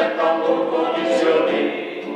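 Choir singing: several voices holding chords together, the notes changing every half second or so, with the hiss of sung consonants.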